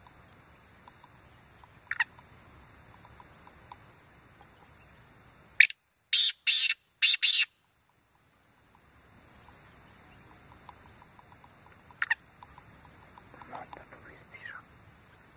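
Black francolin calling: a short note followed by three loud, harsh grating phrases in quick succession about halfway through. Single brief chirps come before and after it, over faint ticking.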